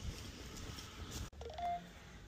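A short electronic beep, a single steady tone lasting about a fifth of a second, about three-quarters of the way through, over faint background noise.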